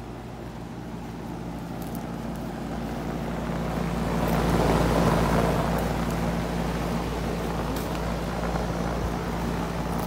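A 2006 Gibson central air-conditioner condenser unit running: a steady whoosh from the fan with a constant compressor hum. It grows louder over the first few seconds, then holds steady.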